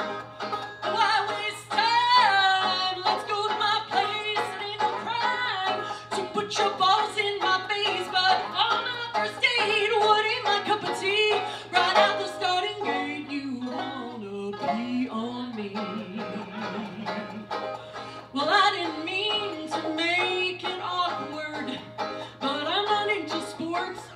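A woman singing a bluegrass song live while accompanying herself on banjo; her voice swoops between notes and holds one long wavering note about two-thirds of the way through.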